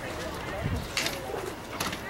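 Distant voices and chatter from people around the field, with two short sharp knocks, about a second in and shortly before the end.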